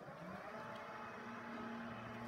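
Power tailgate of a 2016 Volvo XC60 closing under its electric motor: a steady whir with a slight rise in pitch in the first half second.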